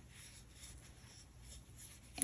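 Near silence with faint rustling of super bulky yarn drawn over a crochet hook as a slip stitch is worked through the back loop.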